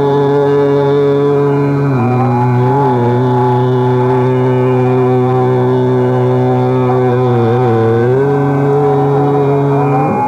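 Hindustani classical male vocal in Raag Megh, sung slowly in long held notes. The voice drops to a lower note about two seconds in, with small ornamental glides, and returns to the higher note near the end.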